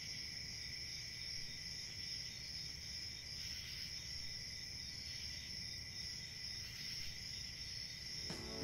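Crickets chirring steadily in a faint night-time background, over a low room rumble.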